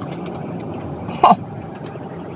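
Steady low hum inside a parked car, with one short mouth sound about a second in from someone chewing a chocolate.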